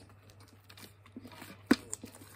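Slime being stretched and kneaded by hand, giving faint scattered clicks and pops, with one sharp, louder pop near the end.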